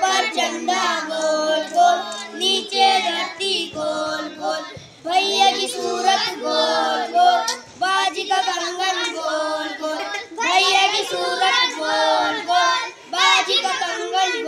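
A small group of boys singing a children's action rhyme together in unison, with one short pause between phrases about five seconds in.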